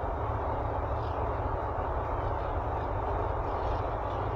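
Steady road and engine noise heard inside the cabin of a car driving at cruising speed, a constant low rumble with road hiss.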